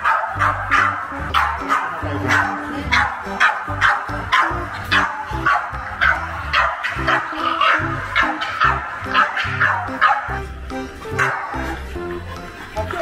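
French bulldog barking over and over, about two to three sharp barks a second, over background music.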